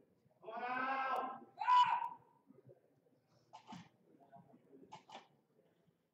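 Shouting during a bench-press attempt: one long, strained yell and then a shorter shout, followed by a few short sharp knocks.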